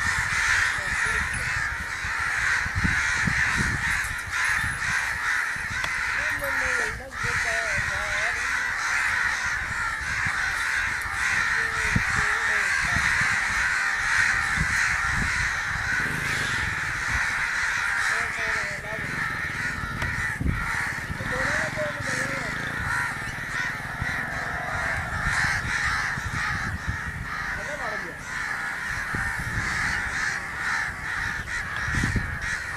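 A continuous, dense chorus of many birds calling outdoors.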